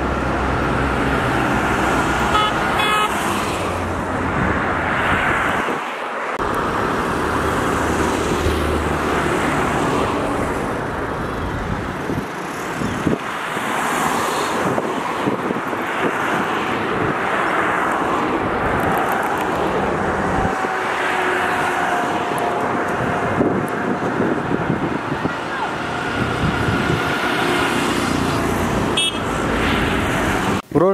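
Street traffic: cars, minibuses and auto-rickshaws passing with steady engine and tyre noise, and occasional horn toots.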